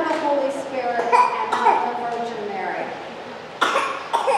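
People's voices, with long, smoothly gliding pitch, and a single sharp cough near the end.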